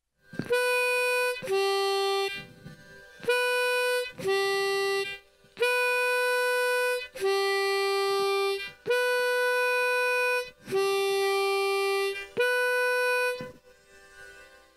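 Diatonic harmonica played into a microphone: nine single held notes, each about a second long, alternating between two pitches a third apart, starting and ending on the higher one.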